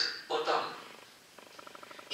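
A man's voice gives a brief utterance early on, then falls quiet. In the last half second a faint, fast, evenly pulsing rattle of about a dozen ticks a second follows.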